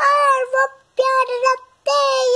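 A three-year-old girl singing a Hindi song in a high, clear voice: two held phrases, with a short break about a second in.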